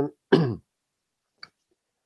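A man clears his throat once, briefly, about a third of a second in, followed by a faint click about a second and a half in.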